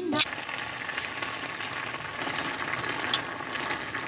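Ramyun noodles cooking in a stainless steel saucepan of boiling broth, a steady bubbling hiss, with a light tap near the start and another about three seconds in.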